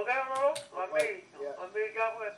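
Speech: a person talking, with a few short sharp clicks over it.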